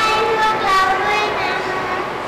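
Young girls' voices speaking in a drawn-out, sing-song way, with long held notes.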